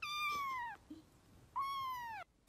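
Grey kitten meowing twice, short high calls that each slide down in pitch.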